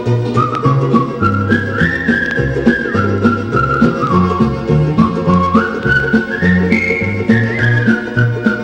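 A vinyl record playing on a JVC turntable: a country-folk tune with a whistled melody stepping up and down over a steady, bouncing bass line.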